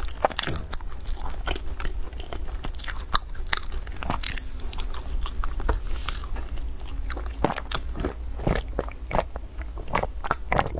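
Close-miked eating of flaky glazed pastry: biting and chewing with many short, crisp crackles of the crust scattered throughout.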